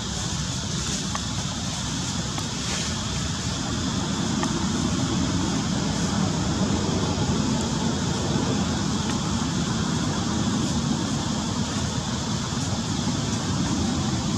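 Steady low rumbling background noise that grows slightly louder as it goes on, with a few faint ticks.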